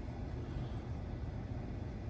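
Steady low hum and hiss inside the cabin of a parked Tesla Model S while it supercharges, with no single sound standing out.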